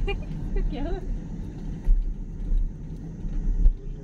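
Low, steady rumble of a car driving along a road, with a couple of louder low surges, and a brief voice sound in the first second.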